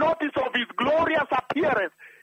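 Speech only: a voice talking steadily, in the narrow sound of a radio broadcast.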